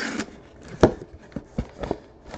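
Sealed cardboard hobby boxes being handled and pulled out of a cardboard case: a brief rustle, then a sharp knock a little under a second in and a few lighter knocks and scrapes.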